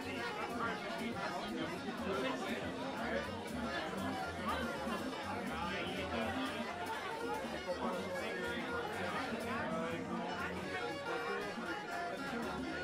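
Crowd chatter: many people talking at once in a small club, with background music playing underneath.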